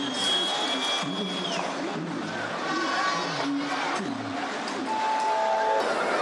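Football stadium crowd noise at half-time: a din of many fans' voices, with a high whistle held for about a second near the start and a short tone near the end.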